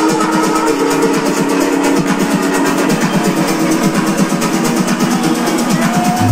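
Electronic dance music played loud over a club sound system, in a breakdown: the kick drum and bass are absent, leaving sustained melodic notes over a fast, even high ticking rhythm.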